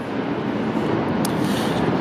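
Steady rushing noise of vehicle traffic, even in level throughout, with a faint tick about a second in.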